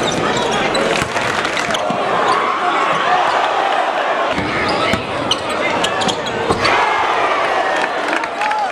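Live game sound in a crowded basketball gym: a steady din of crowd voices, with a basketball bouncing on the hardwood floor in sharp knocks now and then.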